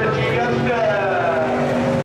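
IMCA modified dirt-track race cars' V8 engines running, one engine note falling in pitch over the second half. The sound cuts off abruptly at the very end.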